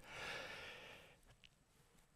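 A man's soft breath, picked up by his microphone between sentences, fading out within about a second; then near silence.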